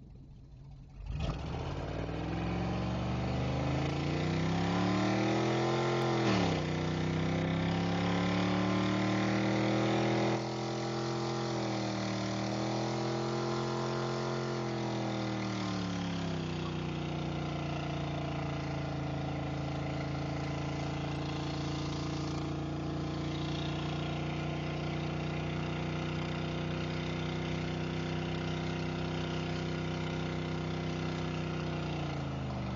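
Pickup truck engine revved hard through a burnout, the rear tyres spinning in place. The revs jump up about a second in and climb for several seconds, drop briefly, waver up and down, then hold high and steady for the second half.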